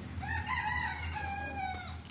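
A rooster crowing: one long call that drops slightly in pitch at the end, over a steady low hum.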